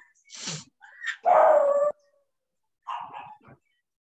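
A dog barking a few times, the loudest bark about a second and a half in.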